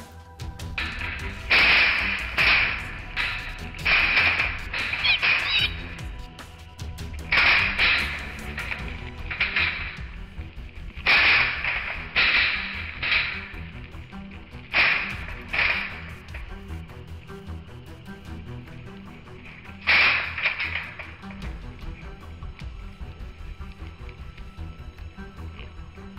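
Feral hogs caught in a corral trap, squealing in a dozen or so harsh high-pitched bursts at uneven intervals, each under a second long, over a low background music bed.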